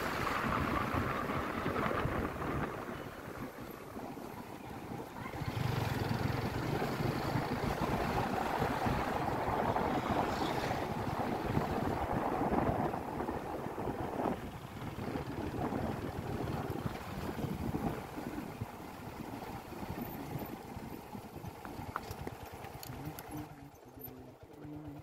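Motorcycle running at low road speed as it is ridden, with wind noise on the microphone.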